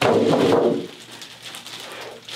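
Clear plastic wrapping crinkling and rustling as a heavy computer case inside it is handled and lifted. The sound is loudest in the first half-second, then drops to quieter rustling.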